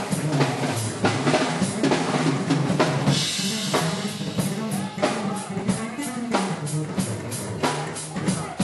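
Live funk band playing an instrumental groove: a drum kit keeps a steady beat under an electric bass line that steps between notes.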